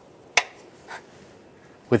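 Power steering fluid reservoir cap being put on: one sharp click, then a fainter knock about half a second later.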